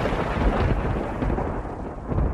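A deep, rumbling boom like a thunderclap, fading slowly, from a dramatic intro sound effect.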